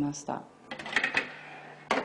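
Metal clicks and rattles of a baking tray being slid into a built-in oven, over a low steady appliance hum, with a sharp click near the end.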